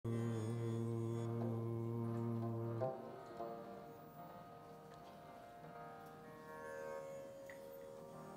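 Harmonium holding a steady low drone chord, which drops away after about three seconds to soft, quieter held notes that move step by step in pitch, opening Sikh kirtan.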